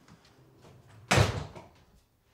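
A door shutting once, about a second in: a single sudden bang that dies away within half a second, after a few faint clicks.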